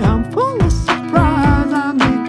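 Background song with a sung vocal melody over a steady drum beat.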